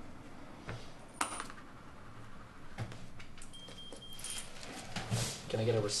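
Coins clinking and cash being handled at a shop cash register, with scattered clicks and a short high beep about midway.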